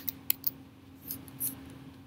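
Computer keyboard keystrokes: three sharp key clicks in the first half second, then two softer taps around a second and a half in, as the last digit of a date is typed and entered.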